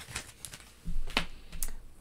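A few light clicks and taps of oracle cards being handled: a card is slid off the deck and laid down on a cloth-covered table.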